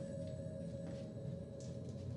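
Dark ambient horror-film score: a low rumbling drone with a steady held tone that fades out in the first second, and a few faint scattered clicks.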